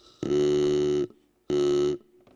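Mechanical vocal-tract model sounding a vowel: air from a hand pump drives a small reed whistle standing in for the vocal folds, and a shaped tube turns its buzz into a vowel-like tone. Two steady blasts at one fixed pitch, the first a little under a second long, the second shorter near the end.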